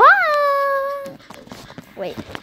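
A child's voice howling like a wolf: a held note that swoops sharply up, falls back and fades out about a second in. Faint clicks and rustling of the phone being handled follow.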